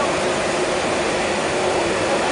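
Glassworks furnace running with a steady, even rushing noise and a faint hum, from its burner and blowers.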